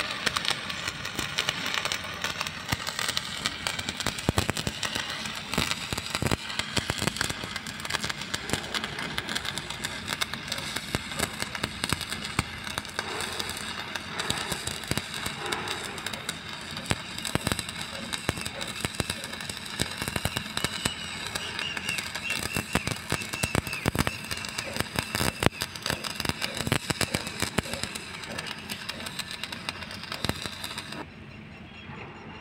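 Stick (shielded metal arc) welding on steel: the electrode's arc crackles and sizzles steadily, with many sharp pops, as a bead is run.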